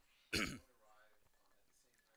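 A man's single brief throat-clearing cough about a third of a second in, dropping in pitch as it ends, followed by faint murmured speech.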